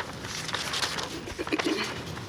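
Sheets of paper rustling and pages being turned as documents are leafed through, a run of quick dry crinkles. A brief low hum comes in about one and a half seconds in.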